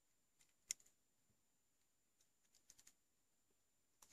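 Near silence with one sharp click a little under a second in and a few faint ticks near the three-second mark: crocodile clips being handled and clipped onto the breadboard circuit's leads.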